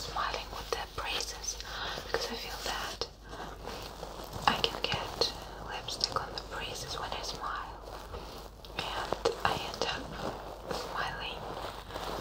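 Soft whispering close to a binaural microphone, with scattered small crackles and rustles from a stuffed toy handled near the microphone.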